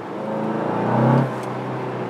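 Seat Leon Cupra's 290 hp turbocharged 2.0-litre four-cylinder heard from inside the cabin, its note rising under acceleration for about a second. It then drops in pitch as the automatic gearbox shifts up, and runs on steadily.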